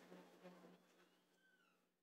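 Near silence: room tone with a faint steady low hum, and a faint brief falling tone about one and a half seconds in.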